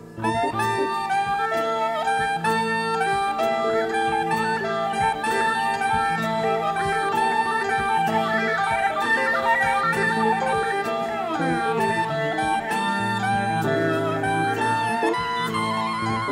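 Instrumental jazz recording playing, several sustained instrument lines sounding at once. The music comes back in strongly after a brief dip right at the start.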